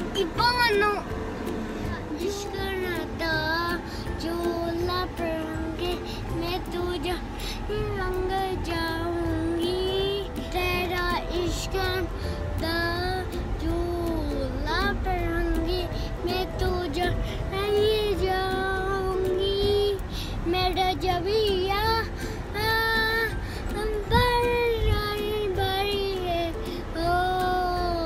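A young boy singing a Bollywood film song, one melodic line of held, bending notes, over the low, steady road rumble of a car cabin.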